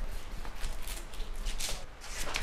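Large chef's knife slicing through the crisp roasted skin and meat of a stuffed turkey roll: a run of short crunchy scrapes, with a louder crunch near the end.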